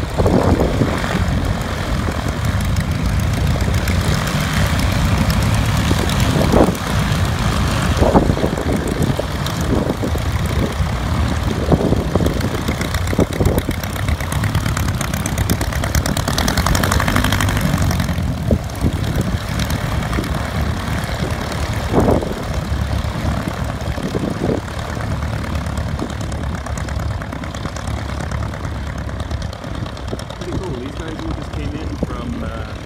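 Small piston-engine propeller aircraft running at idle and taxi power, the nearest a Bowers Fly Baby, with a steady engine drone and a few brief louder bursts. The sound eases off somewhat near the end as the planes taxi away.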